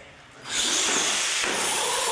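Two radio-controlled monster trucks launching off the drag-race start line, their motors whining and tyres hissing on the concrete floor; the loud, even rush begins suddenly about half a second in.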